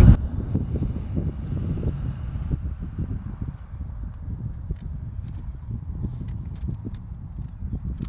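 Wind buffeting the microphone outdoors: an uneven low rumble, with a few faint clicks in the second half.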